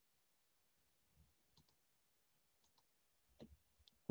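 Faint computer mouse clicks, about five, scattered over near silence, as line segments are placed in a CAD sketch.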